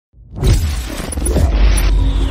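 Logo-reveal sound effect: a deep boom that swells up within the first half second, with a loud shattering, rushing noise over it that keeps going.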